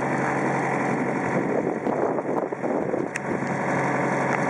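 A truck's engine running steadily, a constant low hum under an even rumble.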